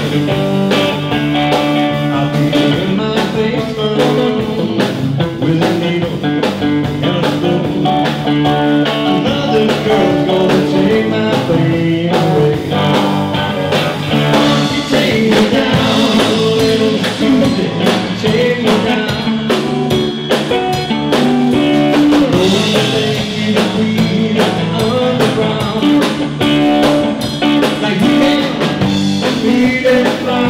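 A live blues-rock band playing: electric guitar, bass guitar and drum kit.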